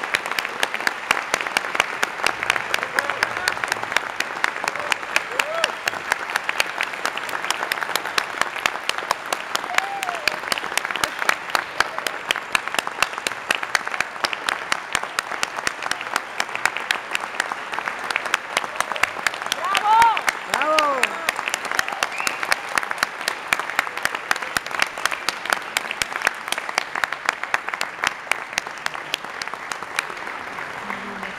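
Audience applauding steadily after an orchestra performance, with a few cheering voices rising and falling above the clapping, a cluster of them about twenty seconds in.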